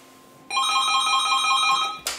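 Corded desk telephone ringing with an electronic warbling trill, starting about half a second in and stopping near the end as the handset is picked up to answer.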